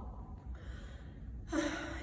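A woman's quick, audible intake of breath near the end, after a short lull with only a faint low room hum.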